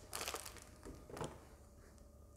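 Faint crinkling of a clear plastic bag being picked up and handled, in a few short rustling bursts.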